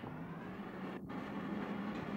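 Steady roar of a glassblowing glory hole's burner, with a low hum under it.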